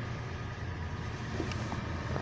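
Low, steady rumble with a faint hiss, and two faint ticks near the end.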